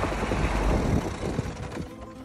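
A compact tractor's engine switched off with the key: its steady running note cuts out right at the start, and the last of the sound dies away unevenly over the next two seconds.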